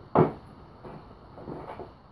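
A clear plastic tub of sphagnum moss being opened. Its lid gives one sharp knock just after the start, followed by a few lighter knocks.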